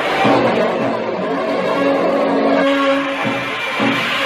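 Cartoon action background music with long held notes, over a steady rushing engine sound effect of a speeding vehicle.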